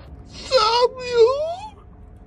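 A high-pitched voice wailing in two drawn-out cries, the second rising in pitch as it ends.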